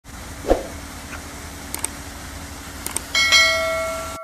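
YouTube subscribe-animation sound effect: two quick double clicks, then a bright bell ding a little after three seconds in that rings on and fades slowly. There is a thump about half a second in, over a steady low background hum.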